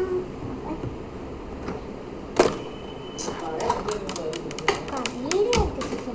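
Small plastic toy pieces clicking and clattering as they are handled, with one sharp click about two and a half seconds in and then a quick run of clicks, alongside a voice in the background.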